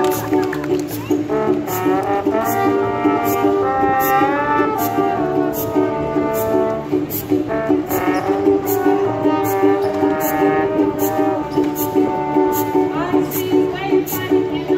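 A live brass band plays an upbeat jazzy tune, with trombone and trumpet carrying the melody over a steady beat.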